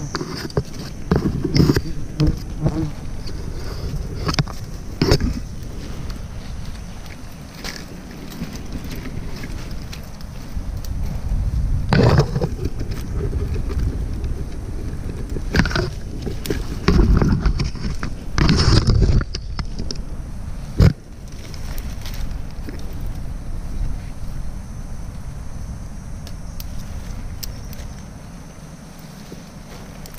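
Clothing, limbs and branches brushing and scraping against a body-worn camera while climbing through a tree, over a low rumble of handling and wind noise on the microphone. Irregular knocks and scrapes come throughout, with louder rustling stretches near the middle and a single sharp click a little after two-thirds of the way in.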